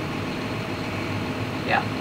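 Tractor engine idling steadily with a low, even hum.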